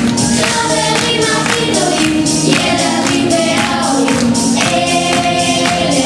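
A children's choir singing a song together over instrumental music with a steady beat.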